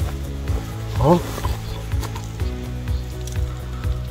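Hand digging and scraping through wood-chip mulch into moist soil, a faint crackly rustling, over steady background music. A brief voice sound comes about a second in.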